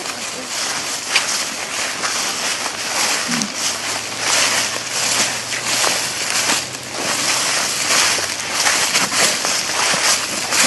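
Several people's footsteps crunching and rustling through dry fallen leaves while walking, as an uneven crackling shuffle.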